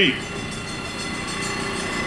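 Steady mechanical hum of a passing vehicle, made of several steady tones and slowly growing louder.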